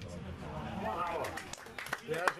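Indistinct voices calling out across an outdoor football pitch, with a few sharp knocks near the end.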